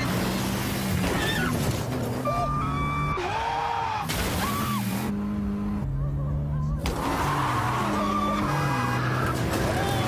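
Soundtrack of a car advert played over a hall's speakers: music with sustained bass notes under the sound of a car being driven hard, with skidding tyres squealing.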